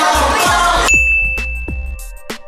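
Background music over a crowd cuts off about halfway in, giving way to a single bright, bell-like ding sound effect that rings on steadily.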